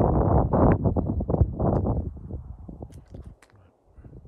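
Loud rustling and crunching noise close to the microphone, strongest for about the first two seconds, then dying away to near quiet with a few faint clicks.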